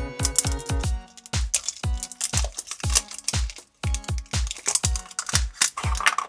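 Electronic background music with a fast, steady kick-drum beat.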